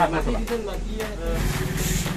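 A motor vehicle engine running with a low, rapid pulse, coming in about halfway through, after voices talking.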